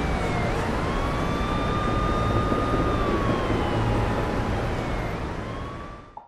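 Siren wailing, its pitch slowly rising and falling, over a steady rush of traffic noise; both fade near the end.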